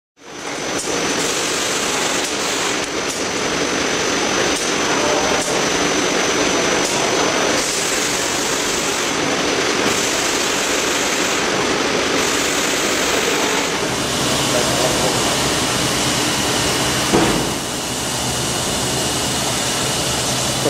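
NAVONA shopping-bag square-bottom folding and gluing machine running with a steady mechanical noise. About fourteen seconds in, a low hum and a high steady tone join it, and there is a single knock a few seconds later.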